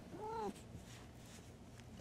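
A domestic cat, disturbed from sleep by being petted, gives one short meow whose pitch rises and then falls.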